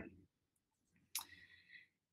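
Near silence in the pause between speakers, broken by a single short click about a second in.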